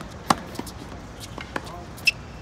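Tennis racket striking the ball on a forehand: one loud, sharp pop about a third of a second in, then a much fainter pop about a second later.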